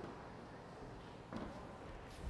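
Quiet bowling-alley room noise, with soft footsteps on the approach about a second and a half in as a bowler starts his delivery.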